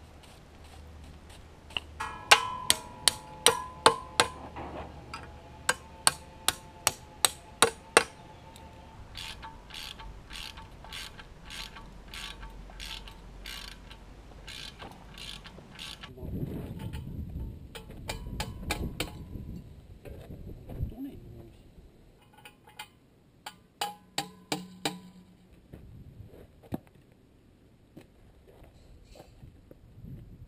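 Runs of sharp metallic clicks, about two a second, from a hand tool working at the base of a metal fence post; the first run is the loudest, with a short metallic ring. A stretch of low handling noise comes in the middle, then a further short run of clicks.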